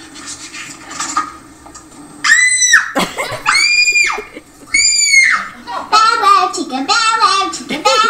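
Web video soundtrack playing through room speakers: three high-pitched, drawn-out squeals about a second apart, then a fast, high, child-like voice with a wavering pitch.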